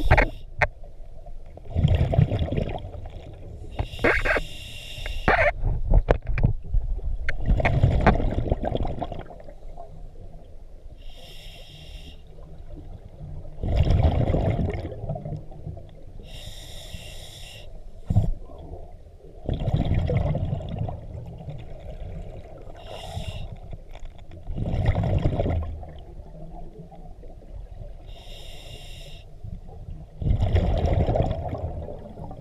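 A scuba diver breathing through a regulator underwater, about five breaths in the stretch. Each breath is a short high hiss on the inhale, then a longer low rumble of exhaled bubbles.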